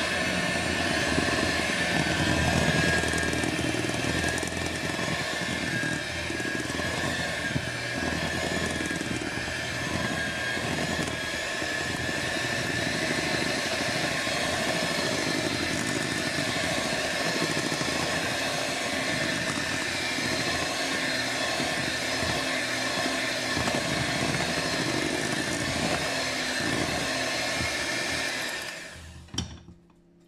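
Electric hand mixer running steadily, its beaters churning thick batter in a bowl, then switched off about a second before the end.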